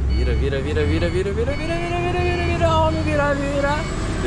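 A man's voice singing wordless, drawn-out notes that slide slowly up and down, over the steady low drone of the truck's engine heard from inside the cab.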